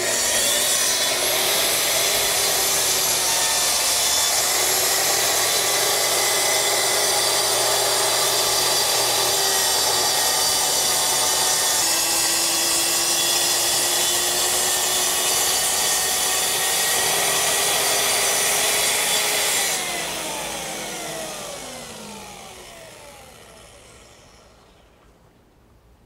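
Festool TS 55 plunge-cut track saw cutting along its guide rail through a sheet of plywood, the blade set 26 mm deep so it also cuts into the sacrificial table underneath. The saw runs steadily for about twenty seconds, then is switched off and winds down with a falling whine.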